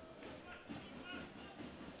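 Faint football-stadium ambience: a low crowd murmur with scattered distant voices.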